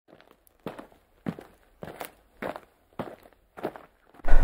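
Footsteps of a hiker walking at a steady pace: six crunching steps about 0.6 s apart, fairly faint.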